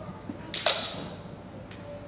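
A drink can's ring-pull opened about half a second in: a sharp pop and a short hiss.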